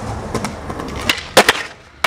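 Skateboard wheels rolling on concrete, then two sharp cracks close together about a second and a half in as the tail is popped and the board snaps up for the jump down the steps.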